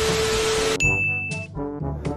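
TV-static sound effect: a burst of hiss with a steady low tone, then a high steady beep lasting under a second, over background music.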